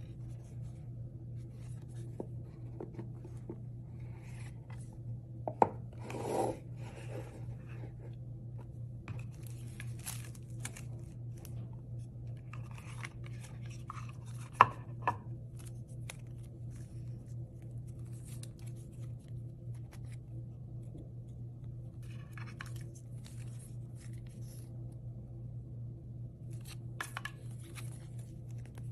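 A cardboard sunglasses box and paper cards being handled: rubbing, rustling and scattered light clicks, with sharp clicks about six seconds and fifteen seconds in and a short scraping rush just after the first. A steady low hum runs underneath.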